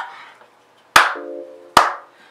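Two sharp hand claps, one about a second in and one near the end.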